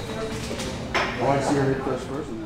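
Indistinct talking with a single sharp metallic clink about a second in.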